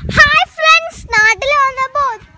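A young girl's loud, high-pitched voice in about five drawn-out syllables with sliding pitch, half sung.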